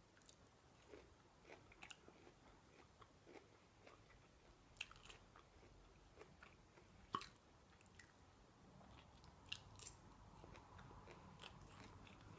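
Soft, close-miked chewing of duck-fat Brussels sprouts: faint wet mouth clicks and small crunches, with a few sharper clicks about five, seven and ten seconds in.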